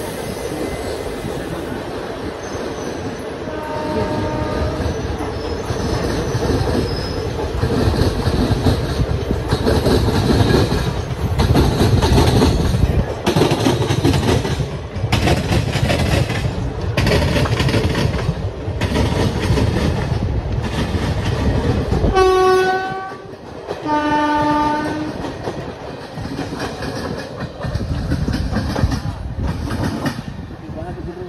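Passenger train coach running at speed, heard from an open window: a loud rumble with a rhythmic clatter of wheels on the rails about once a second. A faint horn sounds about four seconds in, and near the end two train horn blasts, a short higher one followed about two seconds later by a longer, lower one.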